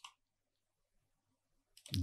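Near silence in a pause between spoken phrases, a voice trailing off at the start and resuming just before the end.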